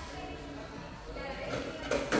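Faint background chatter of voices over a low steady hum, with no clear other sound.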